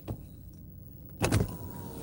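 Handling noise inside a car as a phone camera is moved onto its gimbal: a small click, then a louder bump about a second in, over a low steady cabin rumble. After the bump a faint steady electric whine sets in.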